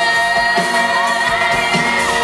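Live concert recording of a pop song: a male singer's voice over a strongly rhythmic band arrangement with long held tones.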